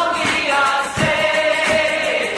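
Music: a group of voices singing together over a band, holding one long note in the second half.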